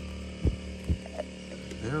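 A steady low hum runs throughout, broken by two short, dull low thumps about half a second apart. A man's voice starts just before the end.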